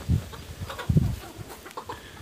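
Chickens clucking, with a couple of low thumps near the start and about a second in.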